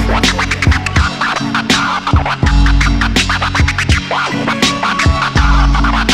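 Hip-hop beat with a DJ scratching a record on a turntable: many short back-and-forth scratch strokes over drums and bass.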